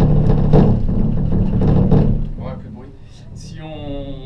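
Gondola cabin running on the lift cable: a loud low rumble with rattling, strongest for the first two seconds, then dying away.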